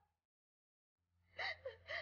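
About a second of dead silence, then a crying woman's three short sobbing catches of breath near the end.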